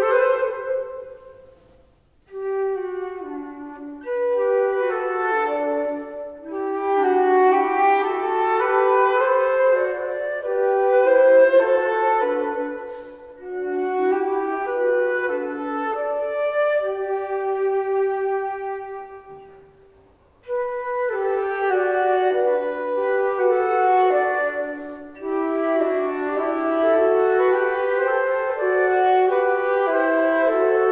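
Two concert flutes playing a duet in sustained, mostly low-register notes, often two notes sounding together. The phrases break off briefly about two seconds in and again about twenty seconds in before the playing resumes.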